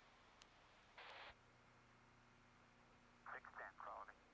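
Near silence, with a short hiss about a second in and a few faint, brief fragments of a voice near the end.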